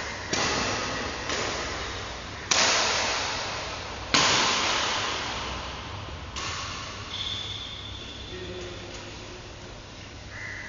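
Badminton racket striking a shuttlecock in a large echoing sports hall: five sharp hits about one to two seconds apart, each ringing on in the hall's echo, the fourth, about four seconds in, the loudest.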